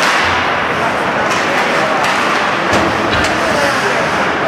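Ice hockey rink din: a steady wash of spectators' voices and skating noise, with a few sharp clacks of sticks and puck along the boards.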